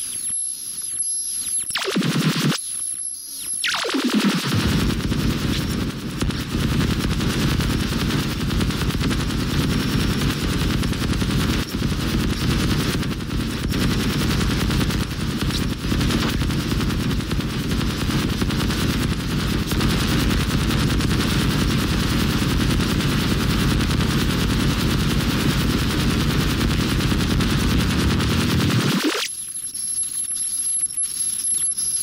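Harsh breakcore/noise music. Thin, high electronic sounds with a steady high whine give way about four seconds in to a dense wall of distorted noise full of rapid stuttering hits. Near the end it cuts back to the thin high sounds.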